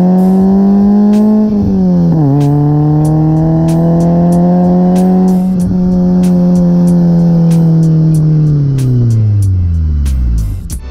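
1988 BMW E30 M3's S14 four-cylinder engine and exhaust under way, recorded close to the twin exhaust tips. The revs climb, drop sharply at an upshift about two seconds in, climb and hold again, then fall away steadily near the end as the car slows.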